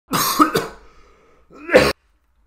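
A man coughing and clearing his throat: a harsh bout of coughs in the first half-second or so, then another loud cough near the end that cuts off sharply. He is feeling sick.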